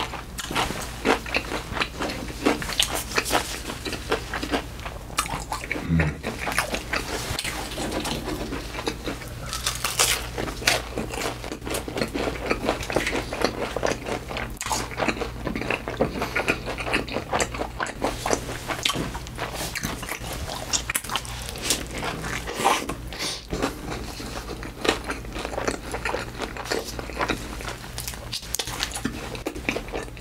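Close-miked eating of fast food: steady chewing with crunchy bites and a dense stream of small mouth clicks and crackles.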